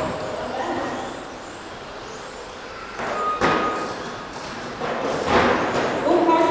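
Electric RC touring cars running laps on an indoor carpet track, their motors whining in the reverberant hall. The sound swells as cars pass close, about three seconds in and again about five seconds in.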